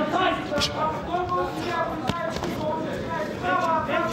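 Raised voices in a boxing arena, overlapping shouts of advice from the corners and crowd. There is a single sharp knock about two seconds in.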